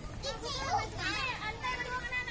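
Young children's high-pitched voices calling and chattering as they play, the pitch sliding up and down.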